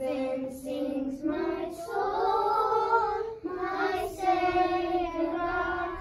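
A class of young children singing together in unison, holding a few long notes.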